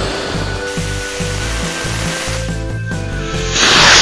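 Background music over the hiss of a small rocket motor strapped to a toy jeep; the hiss swells into a loud burst near the end.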